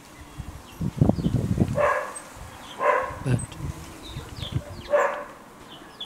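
Outdoor ambience with small birds chirping, a low rumble about a second in, and three short, loud animal calls, the last coming about two seconds after the second.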